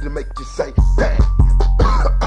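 Memphis rap beat from a 1994 mixtape: a deep, continuous bass with hard kick-drum hits, short bell-like tones on top and chopped vocal fragments.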